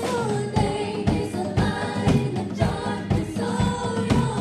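Live gospel worship music: women singing a melody into microphones over keyboard accompaniment, with a steady beat about twice a second.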